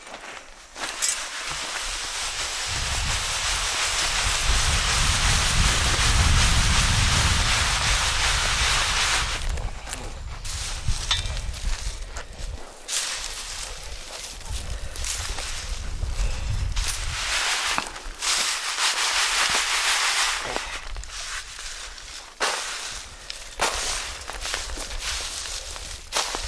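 Dry bean pods and chaff rustling and crackling as they are shaken and tossed in a round woven winnowing sieve. This is hand winnowing of threshed beans, the beans settling while the chaff lifts away. It comes in several long bouts of shaking with short pauses between them.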